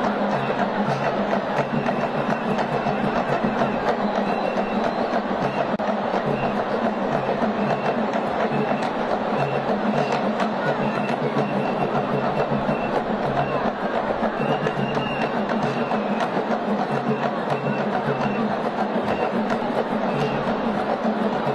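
Live music with drums and percussion keeping a steady, repeating rhythm for a traditional Congolese dance, with voices mixed in.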